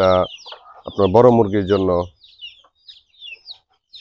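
Backyard hens clucking and young chicks peeping while they feed, with a few short, high calls scattered through the second half.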